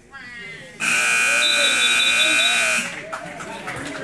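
Gym scoreboard buzzer sounding one long, steady blast for about two seconds, starting about a second in.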